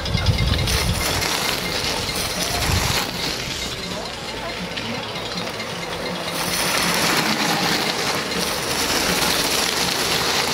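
Bicycle tyres hissing over wet gravel and mud as cyclocross riders pass, the noise swelling about six and a half seconds in as two riders come close. Wind rumbles on the microphone in the first second and again about three seconds in.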